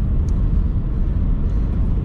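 Steady low rumble of road and engine noise inside a moving car's cabin at cruising speed.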